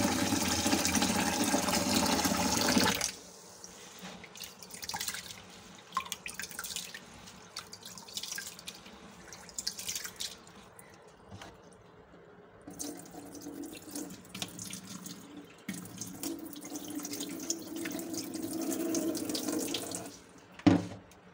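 Tap water runs hard into a plastic bowl of rice in a stainless-steel sink and is shut off about three seconds in. Then come quiet splashes as a hand swishes and rubs the rice in the water. Near the end, a steadier pour of water is heard as the bowl is tipped and the rinse water is drained into the sink.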